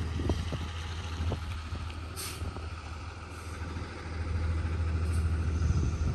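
Flatbed tow truck's engine running, a low steady rumble that grows louder in the last couple of seconds.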